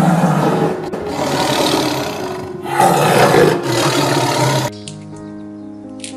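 Lion roaring: two long, rough roars, the second starting just under three seconds in, over light background music.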